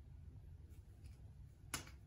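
Quiet room tone with a low steady hum, broken by one short, sharp click near the end.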